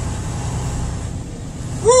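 Semi-truck diesel engine running low and steady, heard from inside the cab as the truck creeps forward. A man's short 'Woo!' comes near the end.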